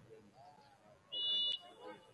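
A single short, shrill whistle blast about half a second long, a little past the middle, typical of a referee's whistle, over faint murmur of voices.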